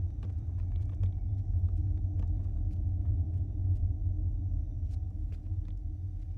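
A steady, low rumbling drone from horror-film sound design, with scattered faint clicks and ticks over it.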